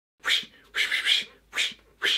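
A man making three short, breathy unpitched mouth sounds in quick succession, like huffs or whispered bursts, the middle one longest.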